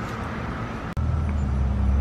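Street traffic: a steady hiss of road noise, then a vehicle engine's low rumble that grows louder from about a second in.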